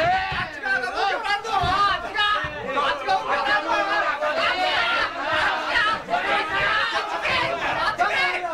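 A crowd of voices shouting and calling out over one another, unbroken throughout, echoing in a large hall.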